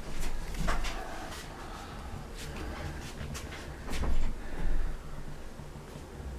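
Handling noise: a low rumble with a few light knocks and rustles as things are moved about, loudest briefly near the start and again about four seconds in.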